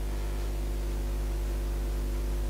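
Steady mains hum with a ladder of even overtones and a light hiss, from the switched-on valve Tesla coil circuit and its mains power supply.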